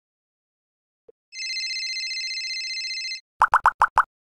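Logo sound effect: a tiny click, then a steady high ringing tone held for about two seconds, then five quick plopping blips in a row near the end.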